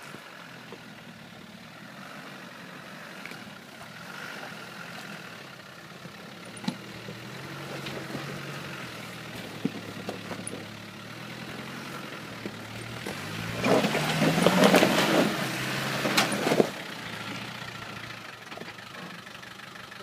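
Land Rover Defender Td5's five-cylinder turbodiesel engine pulling up a steep rocky track in a low gear, growing louder as it nears. About two-thirds of the way through, the revs rise sharply for about three seconds, the loudest part, then drop back. A few sharp knocks from rocks under the tyres.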